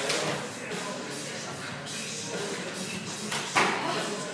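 Jump rope slapping the concrete floor during double-unders, with feet landing, in an irregular run of sharp slaps; the sharpest slap comes about three and a half seconds in.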